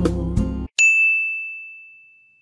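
Background music that cuts off abruptly about two-thirds of a second in. It is followed by a single bright ding, a bell-like edited sound effect that rings on one clear high tone and fades away slowly.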